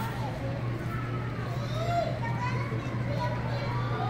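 Indistinct chatter from an audience, children's voices among it, over a steady low hum.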